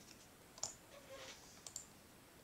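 Near silence with two or three faint, short clicks, the first about half a second in and another near the end.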